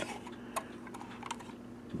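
Several light, irregular clicks and taps as a hand handles the iMAX B6AC charger's case, the clearest about half a second in, over a faint steady low hum.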